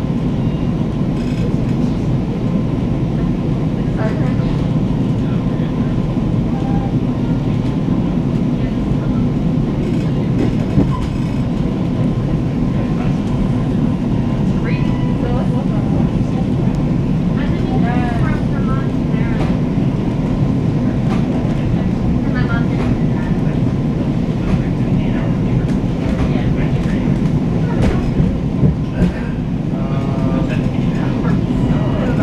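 Interior of a Metro-North Comet V commuter coach rolling along: a steady, dense low rumble of the moving car with scattered clicks and knocks from the running gear.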